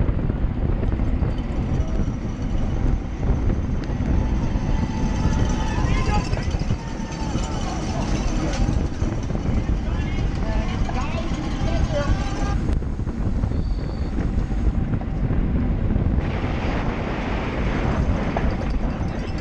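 Steady wind noise on a bicycle-mounted camera's microphone at racing speed. A voice over a public-address system and crowd sounds come through faintly in the middle stretch.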